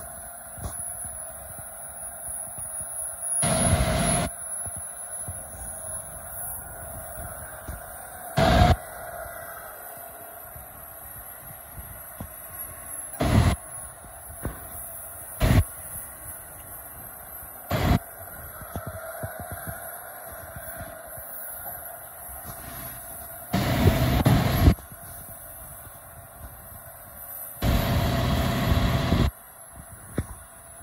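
Komatsu PC450LC-8 45-ton excavator's six-cylinder diesel engine and hydraulics running as the boom and bucket work and the machine tilts itself up on its tracks, with a steady whine. Loud rumbling bursts break in several times: short ones through the middle and two lasting about a second near the end.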